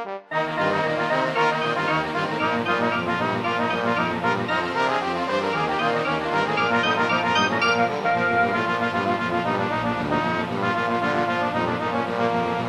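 An ensemble with prominent brass, trombones and trumpets, playing an arranged film theme: a loud, full passage of many instruments that starts after a brief break just after the start and carries on without pause.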